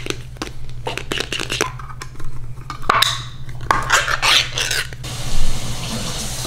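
A pull-tab can of cat food being opened and handled over small stainless-steel bowls: a quick run of clicks and clinks, then bursts of scraping.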